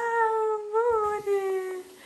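Domestic cat meowing: one long drawn-out meow that bends up in pitch about a second in, then slides slowly down and stops shortly before the end.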